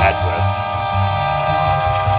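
Music from a broadcast station playing through the loudspeaker of a restored 1938 Montgomery Ward Airline 62-1100 tube console radio: steady held instrumental tones over a bass line, with a voice briefly near the start.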